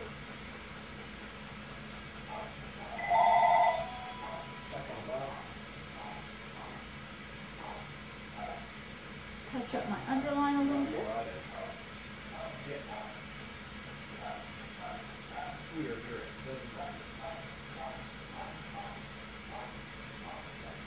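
Faint snipping of curved grooming shears trimming a dog's coat, with an electronic ringing tone lasting under a second about three seconds in and a short voice-like sound around ten seconds in.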